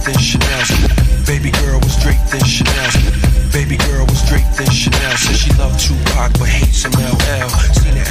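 Hip hop track playing, with a fast rapped vocal over a heavy bass line and a steady drum beat.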